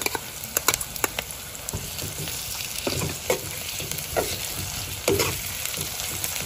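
Sliced onions frying in hot oil in a kadai: a steady sizzle, broken by scattered clicks and scrapes of a metal spoon stirring them.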